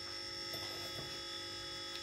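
Steady electrical hum made of several fixed tones, with a faint high whine above it, in a small room.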